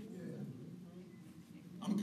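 A pause in a man's preaching: faint murmured voice sounds over room tone, then his speech starts again near the end.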